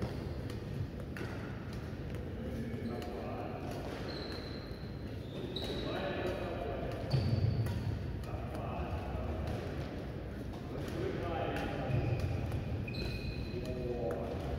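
Badminton rackets striking a shuttlecock in a quick back-and-forth rally, a rapid string of sharp pops, with sneakers squeaking on the court floor several times, all echoing in a large hall.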